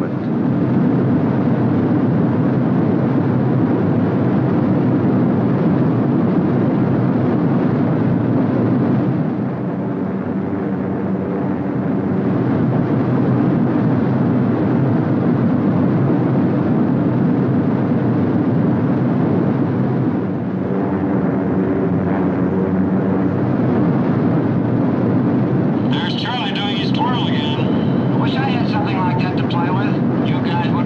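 Steady drone of a B-17 Flying Fortress's four radial engines, heard from inside the bomber's fuselage, easing slightly twice, about nine and twenty seconds in.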